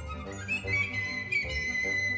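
Symphonic wind ensemble playing a concert band piece. A high note enters a little under a second in and is held, over pulsing low notes.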